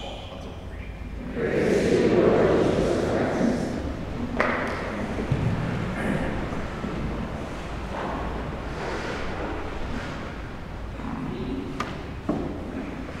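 Congregation noise in a large, echoing church: a crowd murmur swells about a second in, then settles into rustling and shuffling with a couple of sharp knocks as people move in the pews.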